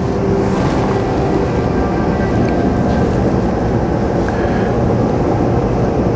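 Soundtrack of a short film played through a lecture room's speakers: a loud, steady, dense rumble with music underneath.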